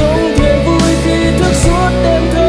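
Rock song played by a full band, with a singer carrying a wavering melody line in Vietnamese.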